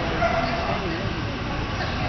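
A dog barking and yipping over a steady background of people talking.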